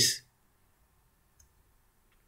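The tail of a spoken word, then near silence with a couple of faint clicks.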